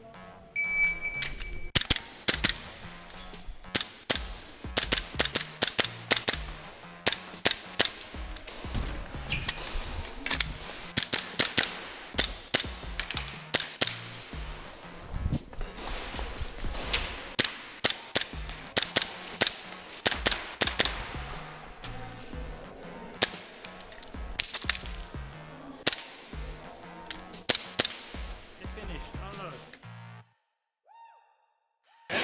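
A shot timer's start beep about half a second in, then an airsoft pistol firing string after string of quick shots with short pauses between groups, the sharp report of each shot standing out over the music.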